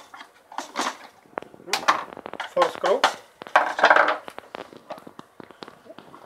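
A screwdriver prying the plastic top cover off a Philips HD92xx airfryer: a run of short, sharp plastic clicks and scrapes as the cover's clips come loose.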